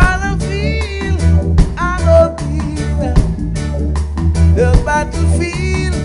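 Roots reggae vocal trio singing in harmony over a live band, with a heavy bass line and a regular drum beat.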